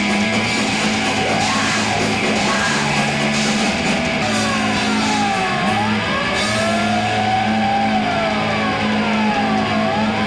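Rock band playing live at full volume, with distorted guitar chords and drums. From about four seconds in, high siren-like wails rise and fall over the music.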